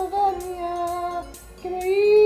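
A high voice singing long, steady held notes, with a short break about a second and a quarter in before the next note begins.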